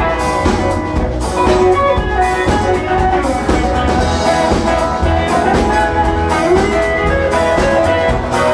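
Live band playing an instrumental break: a lead line with bent, sliding notes over strummed guitar and a steady drum beat.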